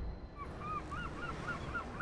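A bird calling: a quick run of short, arched calls, about five a second, starting about half a second in, over faint background hum.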